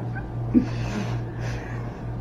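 Breathy, high laughter from two young people, with a short louder burst about half a second in. A steady low electrical hum runs underneath.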